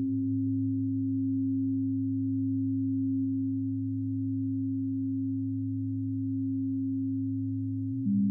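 Behringer/ARP 2500 modular synthesizer sounding sine waves: two low, pure tones held steady together as a drone, one deep and one a little over an octave above.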